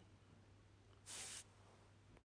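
Near silence: room tone with a faint hum, broken by one short soft hiss about a second in.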